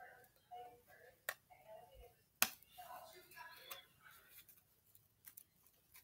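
A deck of playing cards handled by hand, with a few sharp card snaps, the loudest about two and a half seconds in, and faint mumbling.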